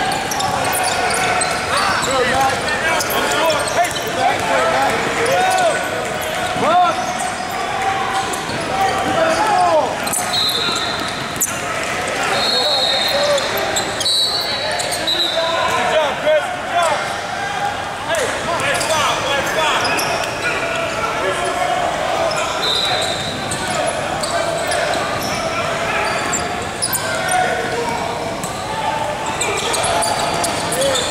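Basketball game in a gym: a ball bouncing on the hardwood court amid a constant hubbub of voices echoing in the large hall, with a few short high tones in the middle stretch.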